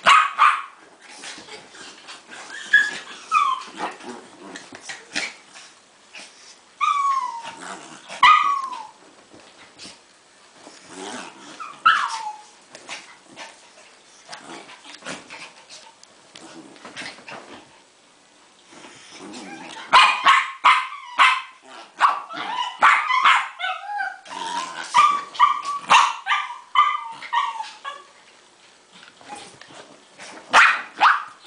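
Havanese dogs play-barking as they wrestle. Short yips that drop in pitch come every few seconds at first. In the last third they give way to a fast, nearly continuous run of barks lasting about eight seconds.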